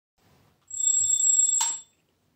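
An alarm clock ringing: a high, steady ring that starts about two thirds of a second in, lasts about a second, and stops with a short click.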